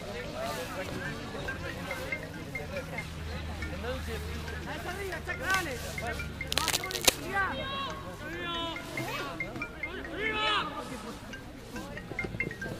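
Rugby players and people on the touchline shouting and calling out during a scrum, many voices overlapping in the open air. A single sharp smack stands out about seven seconds in.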